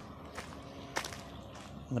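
A few footsteps on rubble-strewn ground, with one sharp crunch about halfway through over a low steady background.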